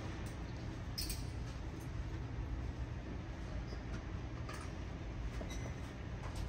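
Steady low hum of indoor shooting range machinery, with a few faint clicks, the clearest about a second in and again about four and a half seconds in, while the target is run out on its track from the booth control box.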